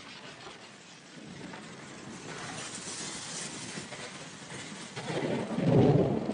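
Wind buffeting the microphone of a roof-mounted camera on a moving car, over a steady hiss of wind and road noise. A heavier low rumble of buffeting swells about five seconds in and is the loudest part.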